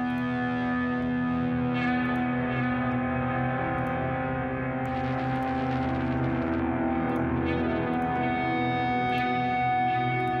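Music playing from the session: a sustained, effects-heavy feedback-guitar part of long held tones, run through a mid/side chorus rack. Its colour shifts as the rack's preset variations are switched, turning brighter and noisier about halfway through, with a new high tone joining near the end.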